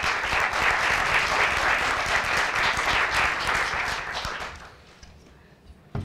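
Audience applauding: many hands clapping together, which dies away about four and a half seconds in. A single short knock comes near the end.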